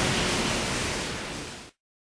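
Steady rushing background noise, with no distinct events, that fades down and cuts to silence near the end.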